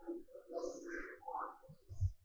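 Faint bird cooing.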